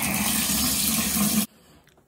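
Water running hard from a bathtub spout into the tub, a steady rush that stops abruptly about one and a half seconds in.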